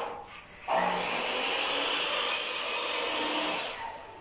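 Electrical wire being drawn through a conduit in a wall chase: a steady rubbing, scraping noise of about three seconds, after a short knock at the start.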